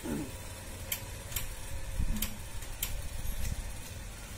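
A few light, sharp ticks, irregularly spaced, over a low steady hum, as the small leads of the tyre-inflation prototype's pressure switch are handled.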